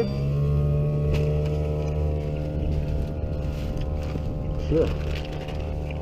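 A motor running steadily at an even pitch, with a low rumble under it. A voice briefly answers near the end.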